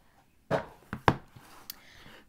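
A cardboard pen presentation box being slid out of its sleeve and handled: two short scrapes of card on card, a sharp tap about a second in as the box knocks against something, and a faint tick near the end.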